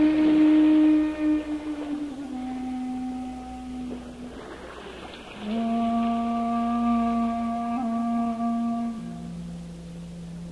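Shakuhachi (Japanese bamboo flute) playing slow, long-held notes with breathy attacks, each lower than the last: a loud first note, a second note about two seconds in, a breathy pause in the middle, then a long note with a slight waver, and a lower, softer note near the end. A soft, steady hiss of background noise lies underneath.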